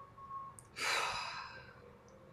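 A woman takes one deep, audible breath lasting about a second, starting a little before the middle and fading away.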